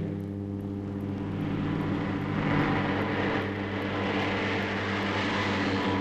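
A car engine running with a steady drone. It grows louder around the middle, then eases off: the sound of a rally car driving on a special stage.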